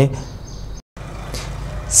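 Steady low background noise between narration, with no distinct tool or metal sound, cut out completely for a moment about a second in.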